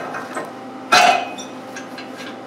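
Steel angle pin being worked by hand in its bushing on a tractor rear blade's pivot, with light metal scraping and clicks and one sharp metallic knock about a second in that rings briefly. The pin is a little tight coming out.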